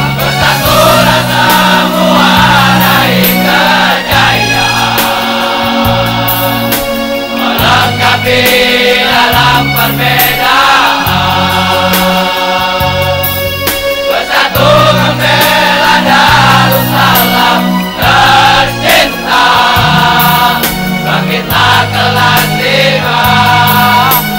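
Large all-male choir singing loudly with instrumental accompaniment: a bass line that changes note every second or two, and regular sharp beats.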